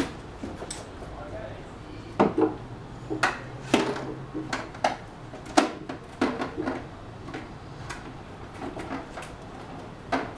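Duoetto MK2 water heater being set onto its wall mounting brackets and its straps handled: a series of irregular knocks, clicks and rattles of the casing and fittings.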